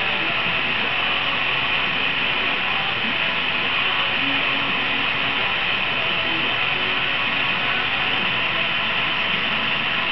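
A canister-mounted gas torch burning with a steady hiss.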